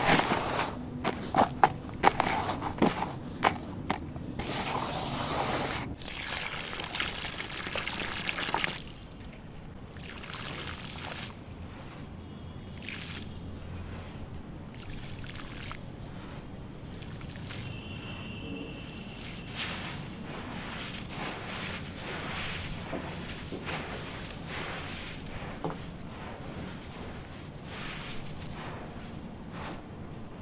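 Gritty crunching and crumbling of sand-cement mix worked by hand, loud for the first nine seconds or so. Then water is poured onto dry sand-cement and soaks in, with a quieter, steady crackling trickle.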